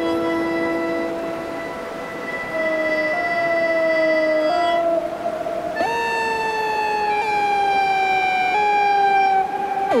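Improvised electronic music of long held, reedy tones from a Hammond Pro-44 electric melodica and analog synth through effects. A steady drone fades about 2 s in, a few stepped notes follow, and about 6 s in a louder note swoops in and then slides slowly downward in pitch.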